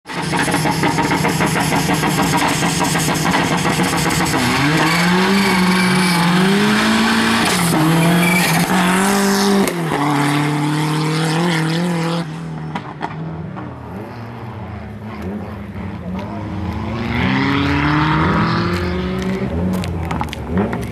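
Fiat Uno Turbo's turbocharged four-cylinder engine revving hard through the gears, its pitch climbing and dropping with each shift. It falls away about twelve seconds in, then climbs again near the end.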